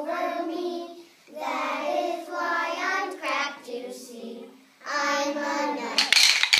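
A child singing in held, sustained phrases, with short breaks for breath about a second in and again shortly before the end.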